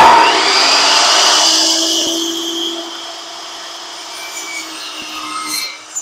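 DeWalt miter saw starts abruptly and cuts through a 2x2 Douglas fir board for about two seconds, then runs on quieter with a steady whine. A few light knocks come near the end.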